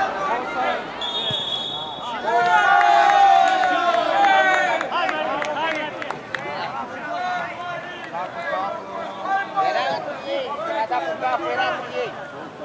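Men shouting across an outdoor football pitch, with a loud stretch of calls a couple of seconds in. About a second in there is a short, steady, high whistle note.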